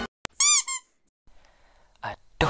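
A sharp click, then two short, high-pitched squeaks in quick succession, each rising and then falling in pitch.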